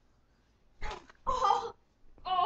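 Two short, loud cries about a second in, the second one a little longer.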